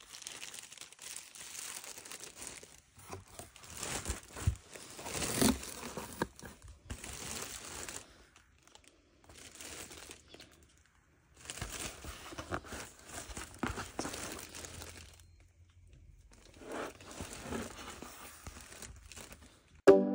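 Clear plastic wrap crinkling and tearing as a cardboard parcel is unwrapped and opened, in several bursts of rustling with short pauses between them.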